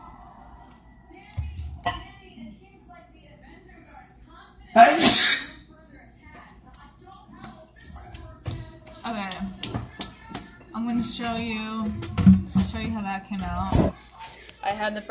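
A short, loud rushing burst about five seconds in, then a person's voice, indistinct and wavering in pitch, over the last few seconds.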